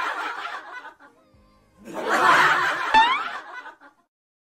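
A person laughing hard in two loud bursts, with a short rising squeal and a knock near the end of the second burst.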